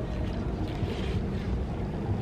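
Steady outdoor wind rumbling on the microphone: an even noise, heaviest in the low end, with no voices.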